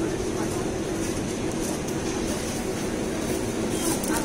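Supermarket background: a steady mechanical hum with faint voices of other shoppers.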